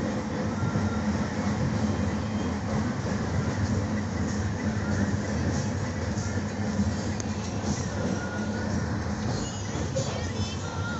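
Steady rumble and rattle of a moving passenger train, heard from inside the carriage: the running noise of the wheels on the rails and the carriage's swaying body.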